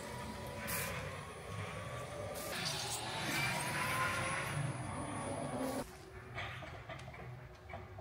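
Electric Jungheinrich order-picker truck driving, its drive motor giving a faint whine that rises slowly in pitch over a steady hum. About six seconds in the sound drops abruptly to a quieter, lower steady hum.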